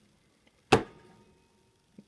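A single sharp knock or tap about three-quarters of a second in, with a brief fading tail; otherwise quiet room tone.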